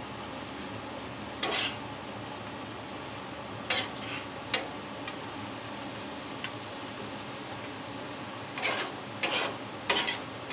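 Mushrooms in butter and garlic frying on a hot griddle top, a steady sizzle, as they render down. A metal spatula scrapes and clicks against the plate a few times, with several strokes close together near the end.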